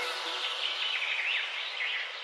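Small birds chirping over a soft, even hiss that fades out: the ambience layer left running at the close of a lofi music track.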